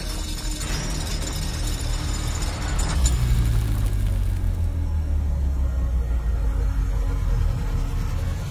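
Horror trailer score: a low rumbling drone under a high, scratchy metallic texture. About three seconds in a sharp hit cuts the high texture off, and a deeper, stronger drone holds after it.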